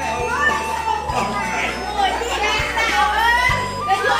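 Several people talking and laughing together over steady background music.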